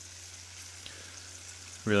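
Freshly baked stuffed summer squash halves sizzling in their olive oil: a faint, steady hiss with a few tiny pops.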